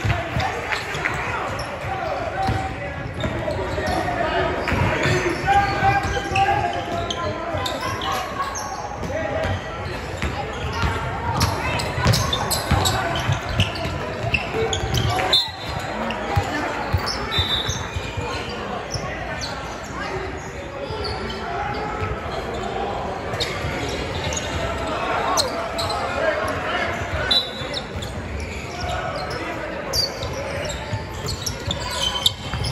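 Basketball game in a large gym: a basketball bouncing on the hardwood court with many short knocks, under indistinct shouts and chatter from players and spectators, echoing in the hall.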